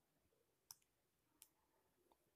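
Near silence, with two faint, sharp clicks: one a little over half a second in and another about three quarters of a second later.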